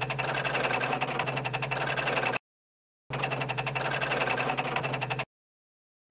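Buzzing, rattling electronic signal sound effect in two bursts with rapid ticking inside, accompanying a text message being typed out on screen. The first burst cuts off about two and a half seconds in and the second starts a moment later, stopping abruptly shortly before the end, with dead silence between.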